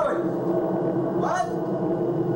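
A steady low hum runs throughout. Over it come two short yelping calls that rise in pitch, one right at the start and one about one and a half seconds in.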